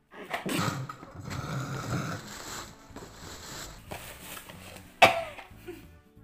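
A woman gagging and coughing on raw tobiko (flying-fish roe), whose fishy taste is making her retch. Rough bursts come in the first few seconds, then a sudden, loudest retch about five seconds in.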